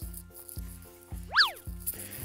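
Soft background music of short, plucked-sounding notes, with a quick whistle-like sound effect about one and a half seconds in that sweeps up in pitch and straight back down.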